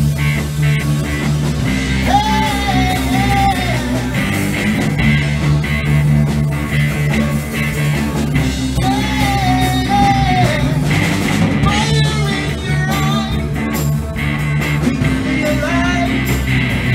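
Rock song played by a band, with guitar and a singing voice that comes in with sung phrases at intervals.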